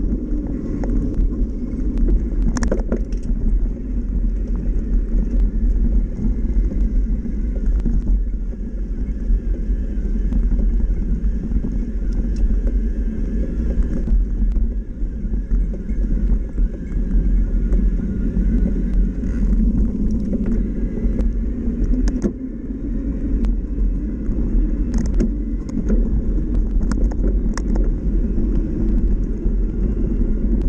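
Mountain bike rolling along a dirt trail, heard from a handlebar-mounted camera: a steady low rumble from the knobby tyres on the dirt and the bike's vibration, with a few sharp clicks and rattles from bumps.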